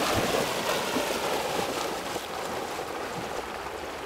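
Water splashing and churning as a golden retriever wades and then swims out through a river, fading steadily as the dog moves away.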